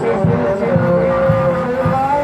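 Live Javanese bantengan accompaniment music: a melody line holds one long note from about half a second in until near the end, over a steady drum beat.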